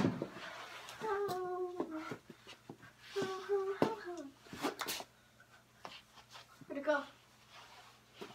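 A boy's voice making wordless sounds in long held notes, three times. A few sharp clicks of plastic knee-hockey sticks and ball come between them.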